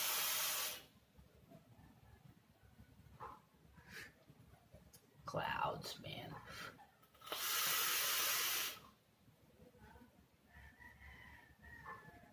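Vaping on a tube mod with a rebuildable dripping atomizer: a loud hissing rush of air that ends about a second in, fainter breathy sounds, then a second rush of about a second and a half near eight seconds in, as vapour is drawn through the atomizer and big clouds are blown out.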